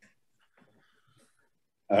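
Near silence with only faint scattered room noises, then a man's voice begins just before the end.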